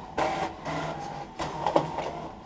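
All-in-one printer printing an incoming fax page, its mechanism running in repeated passes with a louder stroke just after the start and another near the end as the page feeds out.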